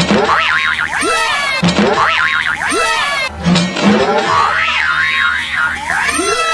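Cartoon-style comedy sound effects: a string of falling springy 'boing' glides, about one a second, mixed with wobbling, warbling pitch slides.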